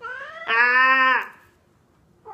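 Mackerel tabby cat giving one long, drawn-out meow that swells about half a second in and falls away at about a second and a half, a complaint at being held and kept from getting away.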